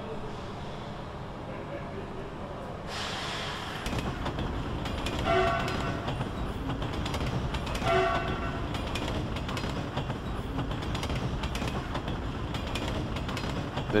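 A passenger train's steady rolling rumble starts about three seconds in and runs on evenly. The train's horn gives two short toots, about five and eight seconds in.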